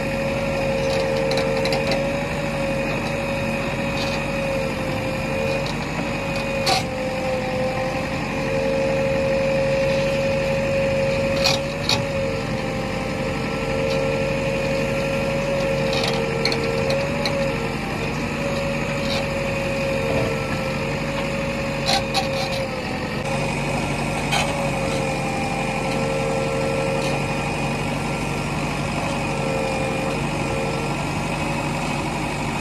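JCB backhoe loader's diesel engine running steadily under digging work, with a constant high whine over it. A few short sharp knocks come now and then as the bucket works the soil.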